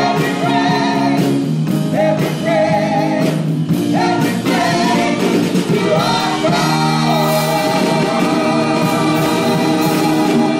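Live gospel singing, long notes held and wavering with vibrato over a steady musical backing.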